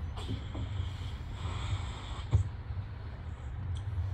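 A balloon being blown up by mouth: breaths puffed into it, over a steady low hum. A single sharp tap comes just past halfway.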